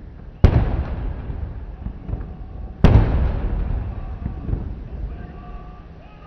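Two heavy booms from ceremonial saluting guns firing blanks, about two and a half seconds apart, each followed by a long rolling echo that dies away.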